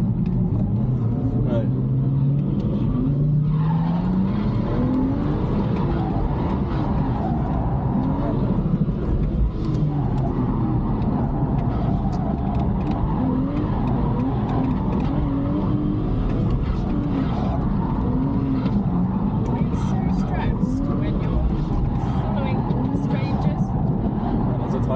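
BMW 335's engine heard from inside the cabin while drifting: the revs climb over the first few seconds, then rise and fall over and over as the car is held sideways, over a steady rush of tyre and road noise.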